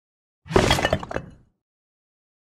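A cartoon crash sound effect: a quick clatter of several hits, like something breaking, starting about half a second in and dying away within a second.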